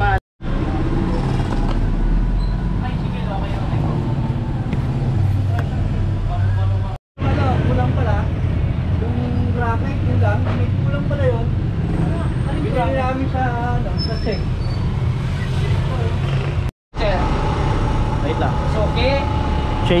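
Background voices talking over a steady low rumble of street traffic; the sound cuts out abruptly three times for a split second.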